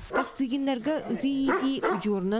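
A large white dog barking behind a wire cage, a quick run of about half a dozen barks.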